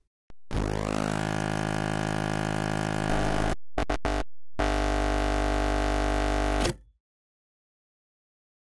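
Electronic intro sting: a sustained buzzing synthesizer tone sweeps in about half a second in, breaks into a few short stuttering pulses near the middle, then holds a second buzzing chord that cuts off about a second before the end.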